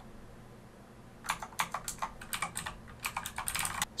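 Typing on a computer keyboard: a quick, uneven run of keystrokes starts just over a second in and goes on until just before the end, after a quiet first second.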